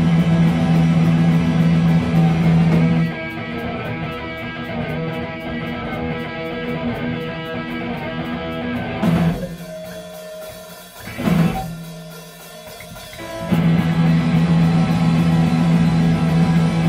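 Punk band playing live with no vocals: electric guitar, bass and drum kit. A loud full-band section with a held low bass note drops about three seconds in to a quieter guitar passage, then thins to a sparse break marked by two single hits. The full band comes back in loud a few seconds before the end.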